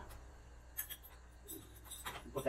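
Faint scraping and a few light clicks from hands handling the metal telescoping stabilizer links on a compact tractor's three-point hitch.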